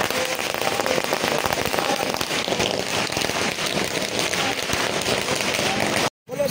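A long string of firecrackers going off in one continuous crackle of closely spaced small bangs.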